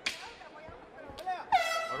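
A short, steady air-horn blast, one flat tone beginning about one and a half seconds in, signalling the start of the round. It is preceded by a sharp swish at the very start.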